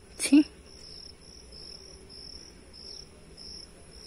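Crickets chirping in a steady run of high-pitched pulses, about two a second. A short vocal sound from a person, the loudest thing, comes about a quarter of a second in.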